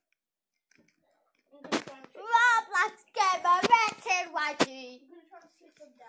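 A child's high voice, wavering and singing-like with no clear words, starting about a second and a half in and lasting about three seconds, with a few sharp knocks mixed in.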